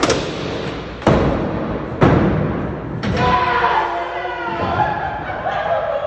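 A skateboard on a concrete skatepark: four sharp knocks about a second apart as the board pops and lands, then people's voices over the rolling, fading out near the end.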